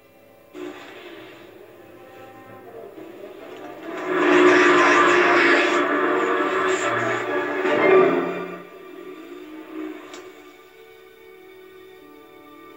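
Film soundtrack playing from a VHS tape through a TV's speakers: background music, with a loud rushing noise that swells about four seconds in, peaks near eight seconds and dies away after about four and a half seconds.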